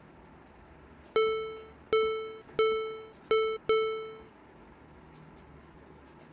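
Serum software synth playing a plain square-wave patch: five short notes on the same pitch, around A4, each struck and fading quickly.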